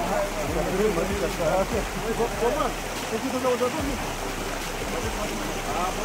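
Several men's voices talking and calling to one another as they work together to shift a boulder, over the steady noise of a shallow running stream.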